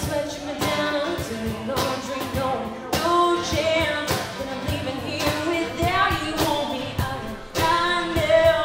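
Live acoustic music: a woman singing to her own acoustic guitar, with a cajón played by hand keeping the beat in sharp, regular hits.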